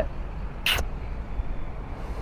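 Steady low outdoor rumble, with one short hiss about two-thirds of a second in.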